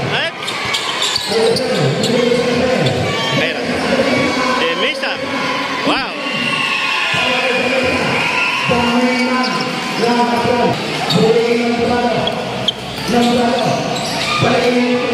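A basketball dribbled and bouncing on a concrete court, its bounces standing out as sharp knocks over the voices of spectators and players.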